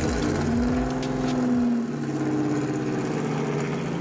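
Porsche 911's flat-six engine running steadily, its note shifting slightly about halfway through.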